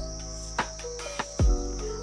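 Background music with a hip-hop-style beat: held tones and a deep, falling bass hit about one and a half seconds in, over a steady high-pitched hum.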